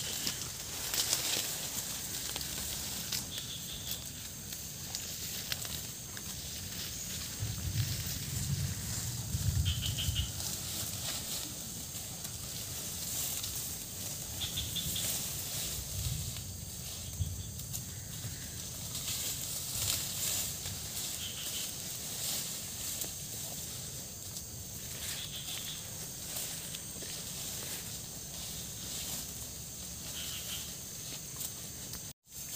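Cattle grazing in dense leafy undergrowth: rustling and tearing of plants, heaviest about a third of the way in. Under it runs a steady high-pitched hiss of insects, with a short chirp repeating every five or six seconds.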